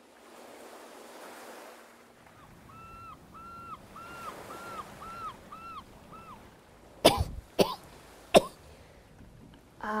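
Surf washing on a beach, then a bird calling in a quick run of about eight short calls. After that, three loud, sharp coughs, a second or less apart.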